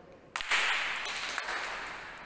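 A group of people bursting into applause about a third of a second in, the clapping then fading away gradually.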